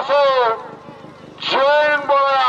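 Two long, loud drawn-out shouts from a man's voice, each rising and then falling in pitch: the first trails off about half a second in, and the second starts about a second and a half in.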